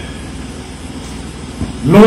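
A steady low rumble with no clear pitch fills a pause in a man's speech. His amplified voice comes back near the end.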